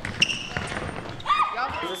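A cachibol ball strikes sharply about a fifth of a second in, ringing in the large sports hall. Players' voices call out near the end.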